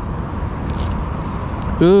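Steady outdoor background noise with a low rumble. There is a brief soft hiss a little under a second in, and a man's voice exclaiming near the end.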